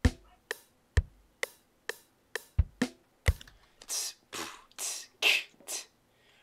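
A sparse programmed drum loop playing back from FL Studio: kick drum thumps and hi-hat ticks, a few hits a second. In the last two seconds, longer hissing hits take over from the ticks.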